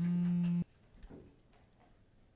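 Smartphone vibrating once for an incoming text message: a steady buzz lasting about half a second that cuts off suddenly.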